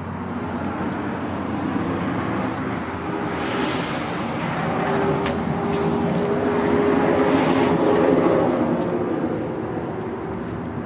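A BMW K1300S's inline-four engine running while the bike stands parked. A louder swell of noise builds from about three seconds in and eases off near the end.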